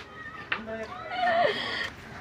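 A person wailing in a high, wavering voice, loudest from about a second in, then falling in pitch and breaking off.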